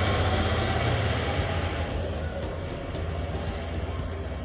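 Steady low rumble with a hiss of background noise picked up by a phone's microphone, easing slightly about halfway through.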